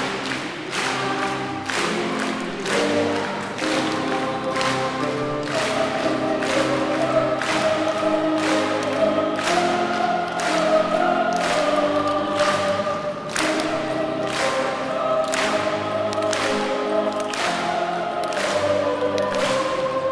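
Boys' choir singing a Chinese children's song in harmony, over a steady rhythmic beat of about two strokes a second.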